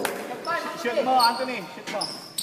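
A basketball bouncing on a gym floor: a sharp thud at the start and another near the end, with players' voices around it, echoing in a large gym.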